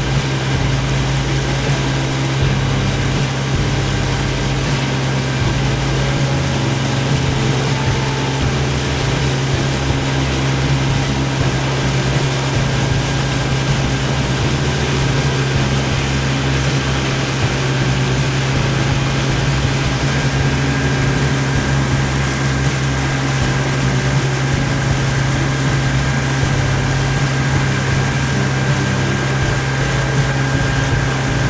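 A motorboat's engine running steadily at cruising speed, a constant low drone that holds one pitch, with a haze of water and wind noise over it.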